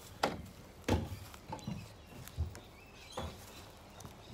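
Plastic wheelie bin being unlatched and its lid opened with a metal snake hook: about five separate knocks and clunks of plastic and metal, the loudest about a second in.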